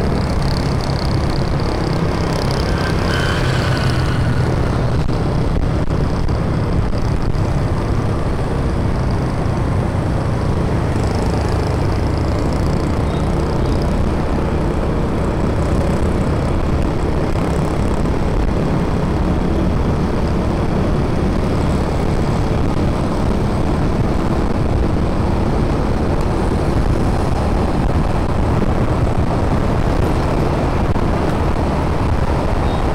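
Steady road noise from a motorbike under way in city traffic: wind rushing over the microphone, the engine, and scooters and other vehicles around it.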